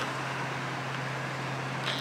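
Steady city street background: an even, low hum of traffic with no distinct events.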